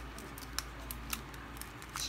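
Light clicks and rustles of cellophane-wrapped stamp and sticker packets being picked up and slid across a cutting mat.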